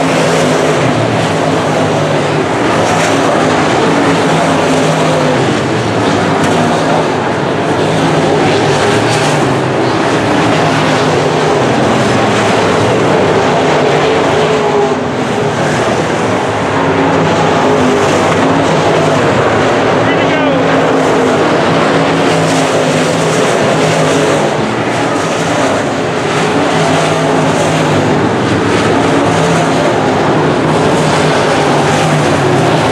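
A pack of dirt-track modified race cars' V8 engines running at racing speed around the oval. Several engines overlap, their pitch rising and falling as cars pass and go round the turns.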